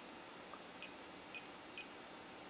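Three faint, short clicks from the buttons of a Fluke 117 multimeter being pressed, over low room hiss.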